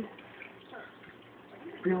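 Faint, even hiss of a quiet room, then a voice starts speaking near the end.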